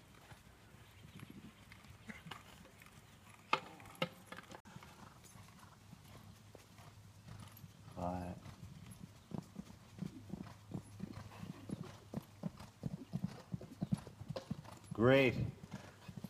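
Horse's hooves on sand arena footing as it canters through a line of small jumps: a quick, regular run of hoofbeats through the second half, with a couple of sharper knocks earlier on.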